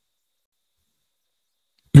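Dead silence for almost two seconds, then a man's voice starts speaking right at the end.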